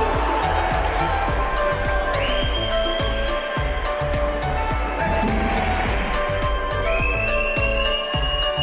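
Background music with a steady, heavy bass beat and held notes, with a high tone sliding up and holding about two seconds in and again near the end.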